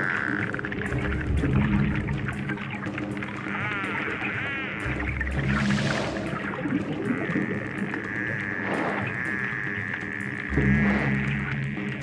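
Background music with long held low notes, mixed with the clicks and warbling, wavering whistles of a bottlenose dolphin hunting by echolocation.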